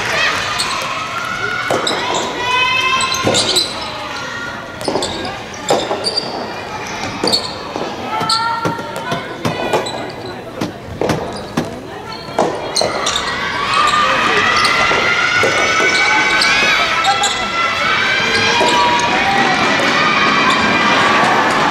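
Soft tennis rally: the rubber ball is struck by rackets and bounces on the wooden gym floor in a string of sharp knocks, mixed with short shouts from the players. About two-thirds of the way through, the knocks give way to sustained, louder shouting and cheering.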